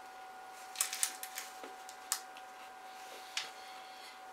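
Chewing a milk chocolate and peanut butter cup stuffed with crunchy cereal puffs: a quick cluster of crisp crunches about a second in, then single crunches near the middle and a little past three seconds.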